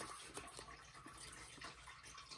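Faint rustling and a few soft flicks of paper banknotes being counted by hand.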